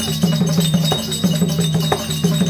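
Therukoothu folk-theatre accompaniment music: a low held melody line over a quick, even beat of percussion strokes with a chiming, clinking ring, played for a costumed dancer.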